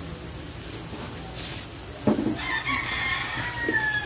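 A rooster crows once in the background, starting about two seconds in, with a long held call that drops in pitch at the end.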